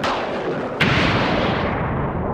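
Electric-zap sound effects: a sharp crack at the start and a louder one about 0.8 s in. Each trails off in a long crackling decay that drops in pitch.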